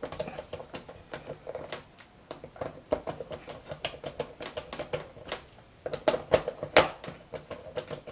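Phillips screwdriver turning a small panhead screw into a plastic brush-cutter blade guard: a run of irregular small clicks and ticks, one sharper click near the end.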